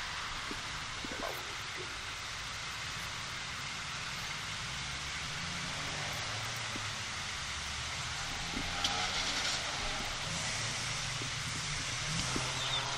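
Open telephone line on a call-in broadcast carrying steady background hiss and a low rumble from the caller's end.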